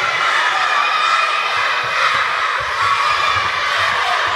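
A crowd of children shouting and cheering without pause in a sports hall, many voices overlapping, with a few low thuds beneath.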